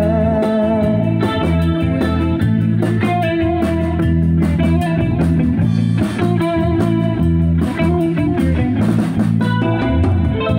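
Live band playing amplified electric guitars over a drum kit, with a guitar line carrying sustained, bending notes and steady drum strokes underneath; no voice is singing.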